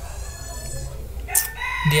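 A high-pitched animal call in the background, loudest from about two-thirds of the way in, with a fainter high call in the first half; a man's voice comes in right at the end.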